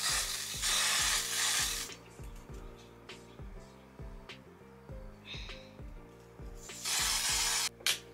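Aerosol hair concealer spray hissing from the can in bursts of about a second: twice at the start and once more near the end.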